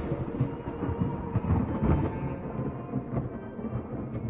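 Thunder rumbling and crackling over background music with steady held tones, the thunderclap having broken just before.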